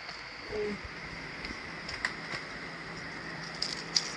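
Handling noise: scattered light clicks and knocks as an item is taken off a wall shelf and the phone is carried, with a cluster of sharper clicks near the end. A short low falling tone is heard about half a second in, over a steady background hum.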